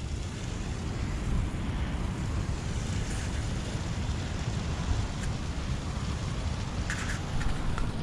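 Wind rumbling on the microphone over a steady rush of surf.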